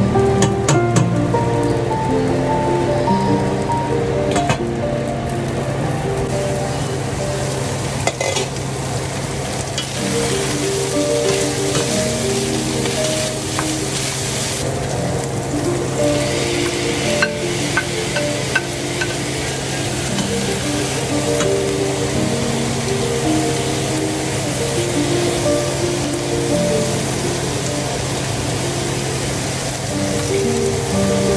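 Ground beef and onions sizzling as they fry in a stainless steel pot, stirred now and then with a wooden spatula that gives a few light scrapes and taps. Soft background music with steady held notes plays under the sizzle throughout.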